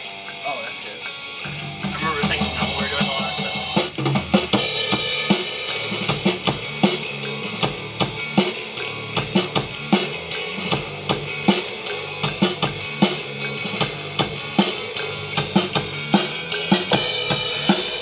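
Acoustic drum kit played at a fast, steady beat: kick and snare hits with cymbals, several strokes a second, and a dense loud stretch about two to four seconds in. A low pitched tone runs underneath from about a second and a half in.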